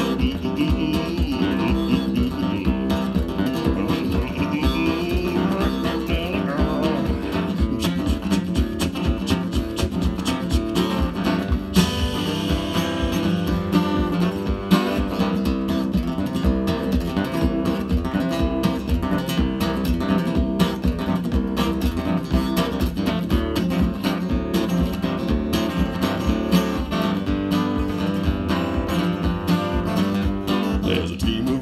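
Solo acoustic guitar strummed in a steady, even rhythm with no singing: an instrumental break, its strumming pattern meant to imitate a paddle steamer's paddles.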